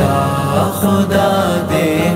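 Male voices singing a sustained, chant-like vocal passage of an Urdu naat, holding and sliding between long notes without words.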